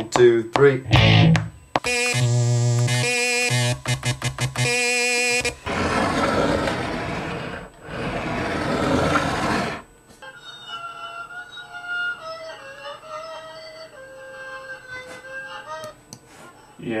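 Synthesizer sounds being tried out, after a few low plucked bass-guitar notes. A buzzy tone with wobbling pitch sounds in short blocks, then two long hiss-like swells, then a quieter melody of held notes near the end.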